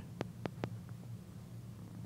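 A low, steady hum with three small, sharp clicks in the first second and a fainter one just after.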